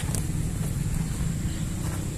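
Steady low rumble of outdoor background noise, with a faint click just after the start and another near the end.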